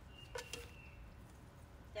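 Faint snip of scissors cutting through a garden vegetable stem, a sharp click about half a second in, with a thin high steady tone for about a second alongside it.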